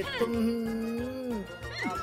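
A cartoon character's drawn-out vocal cry, held at one pitch for over a second and then falling away, over background music.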